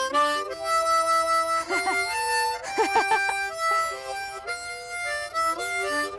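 Harmonica played solo with hands cupped around it: a bluesy run of held notes, with wavering bent notes about two and three seconds in.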